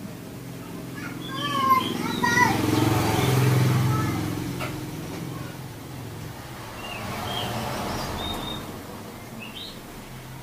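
Oriental magpie-robin singing in two spells of quick chirps, whistled slurs and warbling notes, with a lull in the middle. A low rumble swells and fades beneath the first spell.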